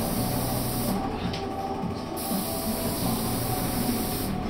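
Paint spray gun hissing as it sprays primer onto a wooden window frame. The hiss stops about a second in and starts again about two seconds in as the trigger is released and pulled again, over the steady hum of the sprayer's motor.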